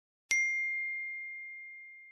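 A single bell-like chime struck about a third of a second in. It rings one clear high tone that slowly fades away, the sound sting of the Cockos logo outro.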